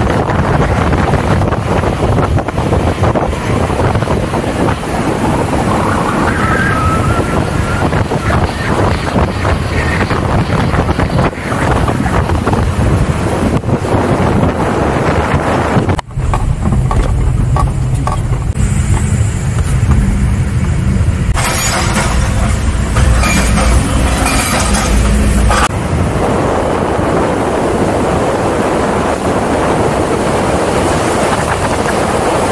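Wind rushing over the microphone with road and engine noise from a moving vehicle. About halfway through the sound cuts abruptly to a lower, heavier rumble from inside a car, then returns to wind-rushed road noise near the end.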